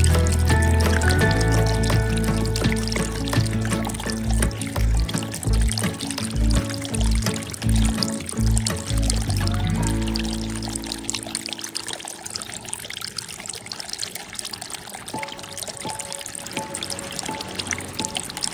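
Background music plays and fades out about ten seconds in, leaving the trickle and slosh of water in a plastic bag of medaka as it is handled.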